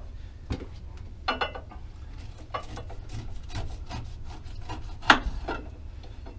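Kitchen knife cutting down through the rind of a fresh pineapple, a run of short irregular scraping cuts, with one sharper knock about five seconds in.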